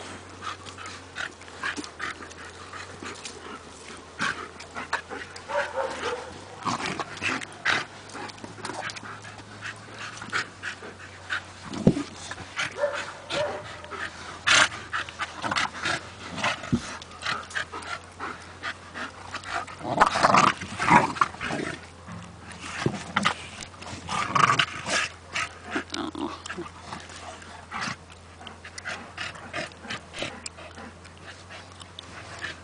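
A German Shepherd and a Staffordshire Bull Terrier play-fighting in a sand pit: scuffling and pawing in the sand, panting, and short dog noises, loudest around twenty and twenty-five seconds in.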